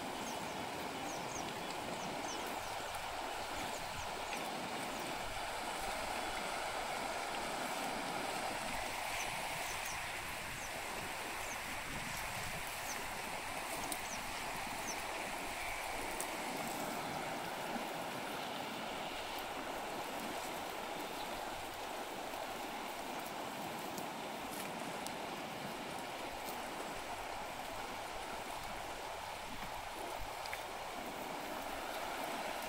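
Shallow river water running steadily over stones and gravel.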